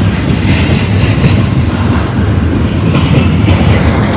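Double-stack container train's well cars rolling past close by: a loud, steady rumble of steel wheels on the rail, broken by scattered clacks.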